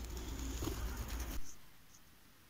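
A flock of feral pigeons cooing over steady outdoor noise with a low rumble. The noise cuts off suddenly about one and a half seconds in, leaving only a quiet room.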